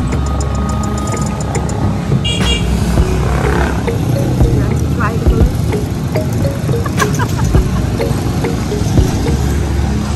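Roadside traffic: motorcycles and motor tricycles running past with a steady engine rumble, with music and voices in the background and a few small clicks.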